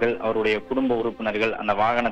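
Speech only: a man reporting in Tamil over a telephone line, his voice narrow and thin.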